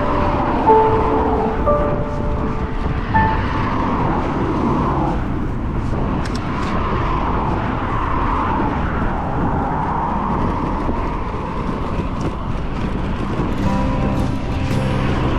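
Cars passing on the adjacent road, swelling past a couple of times, over a steady low rumble of wind and road noise from the moving bike. A few soft musical notes sound in the first few seconds and fade out.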